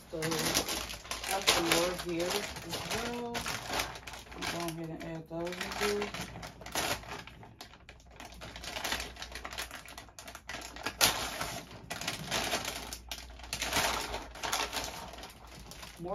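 Clear plastic bags crinkling and small plastic pieces clicking together as they are sorted by hand. A woman hums a few held notes over it during the first six seconds.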